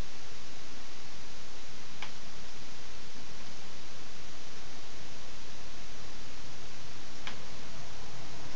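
Steady hiss from the recording microphone with two faint single clicks, about two seconds in and near the end, typical of a computer mouse being clicked.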